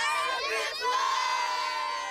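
A group of children shouting and cheering together at once, their voices merging into one long held shout.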